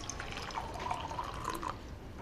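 Water poured from one clear cup into another, splashing into the cup and trailing off into drips near the end.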